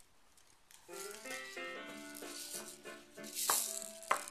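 A toy shaker rattling, with a simple tune of held notes stepping up and down that starts about a second in.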